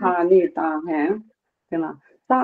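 Speech only: one person talking, with a short pause about one and a half seconds in.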